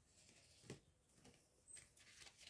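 Near silence with a few faint, short clicks of tarot cards being handled.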